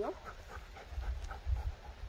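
Golden retriever panting in quick, short breaths, several a second.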